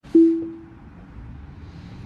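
A single low electronic chime rings out and dies away within about half a second, over the steady road noise of a moving car's cabin.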